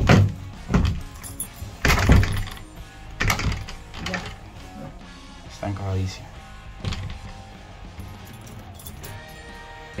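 Sharp knocks and clicks of a key worked in a door lock cylinder that spins freely without catching the lock, over background music. The loudest knocks come at the very start and about two seconds in.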